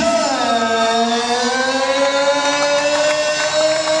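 One long held note that dips in pitch at first and then rises slowly and steadily for about four seconds.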